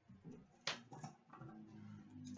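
Hands opening a cardboard trading-card box: a sharp snap about two-thirds of a second in, then a few small clicks and light handling, over a faint low hum.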